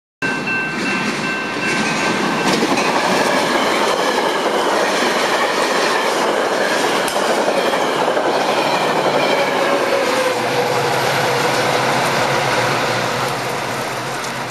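Bilevel commuter train passing on the rails: a steady, loud rush of wheel and rail noise with clickety-clack. A thin high tone sounds for about the first two seconds, then stops.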